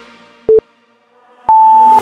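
Interval-timer countdown beeps: a short beep about half a second in, then a longer, higher beep about a second later that marks the end of the work interval and the start of the rest.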